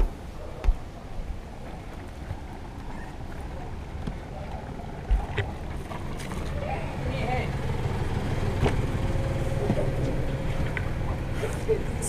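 A low, steady rumble of wind and water on the camera's microphone aboard a drifting sailing catamaran, growing louder in the second half, with a few sharp knocks from the camera being handled. Faint voices sound in the background.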